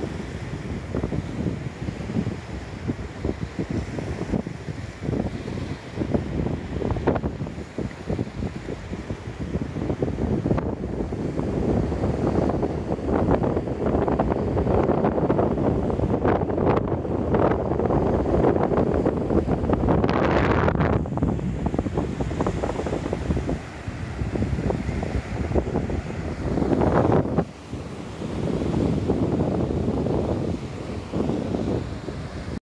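Wind blowing hard across the microphone in uneven gusts, over the wash of waves breaking on a sandy shore.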